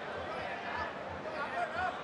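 Fight-arena background noise during a kickboxing bout: a steady crowd hubbub with faint shouted voices, over a run of dull low thuds.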